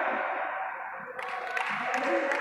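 The echo of a shout dying away in a large, reverberant sports hall, then low hall noise with faint, indistinct voices from around the mat, rising again about a second in.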